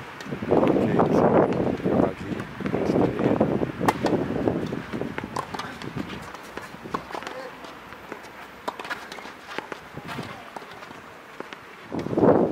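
Tennis ball struck back and forth by rackets in a rally on a clay court: a series of sharp pops about a second and a half apart, with people talking during the first few seconds.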